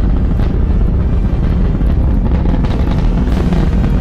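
A deep, steady rocket-launch rumble laid over dramatic soundtrack music.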